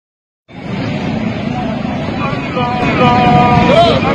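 A man's voice chanting in long, steady held notes, the imam leading the congregational prayer aloud, beginning about two seconds in and ending in a wavering turn of pitch. Under it runs a steady low rumble of street and crowd noise from about half a second in.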